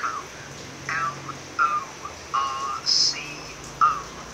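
Recorded dialogue from a business-English listening exercise, a telephone conversation, played back through a small speaker. The voices sound thin and tinny, with little low end.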